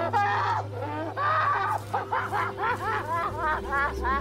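Women wailing and sobbing in grief over the dead, a stream of short rising-and-falling cries that come faster and shorter toward the end. A low music drone comes in under them about three seconds in.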